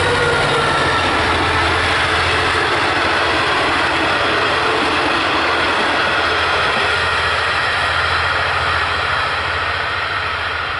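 V/Line N class diesel-electric locomotive passing at speed with a steady low engine drone and a whine that drops slightly in pitch as it goes by. Its passenger carriages follow with continuous wheel-on-rail rumble, easing off a little near the end as the train draws away.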